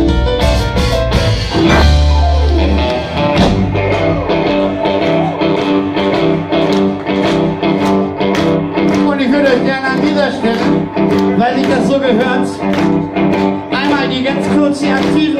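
Live blues band playing: electric guitars over drums and keyboard, with a heavy deep low end that stops about three and a half seconds in, leaving the guitars and keyboard vamping over the beat.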